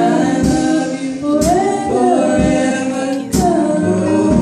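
Women's vocal group singing a gospel song together into microphones, voices sliding between notes over held low accompaniment. A steady beat of sharp strokes falls about once a second.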